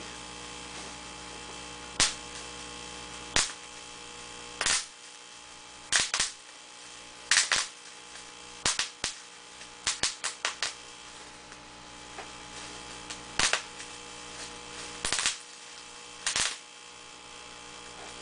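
Irregular sharp clicks and snaps, some single and some in quick clusters, from a small object being handled, over a steady electrical mains hum.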